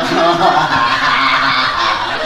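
People snickering and chuckling, mixed with wordless voice sounds.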